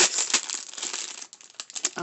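Crinkling of the plastic packaging of a set of paint brushes as it is handled, densest in the first half second and thinning out toward the end, with one sharp click near the end.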